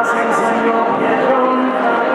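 A song sung live, its notes held for a few tenths of a second each and moving from pitch to pitch.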